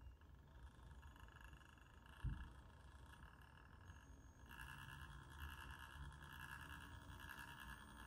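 Faint, steady high whine of a micro-crawler's Furitek Komodo brushless motor running in FOC mode at crawling speed, getting a little stronger about halfway through as the truck creeps forward. A soft thump a couple of seconds in.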